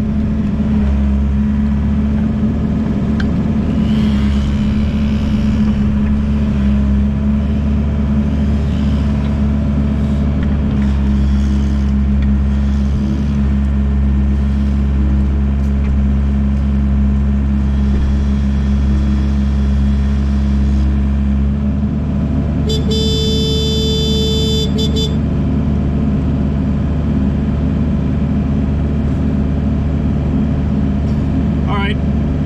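Excavator's diesel engine running steadily, heard from inside the cab, its note changing about two-thirds of the way through. Shortly after, a high-pitched tone sounds for about two seconds.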